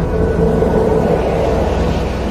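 A steady low rumbling drone with a faint held hum above it, unchanging throughout.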